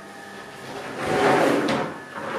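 Curved sliding door of a shower cabin being slid open along its track: a sliding noise that swells about a second in and stops near the end.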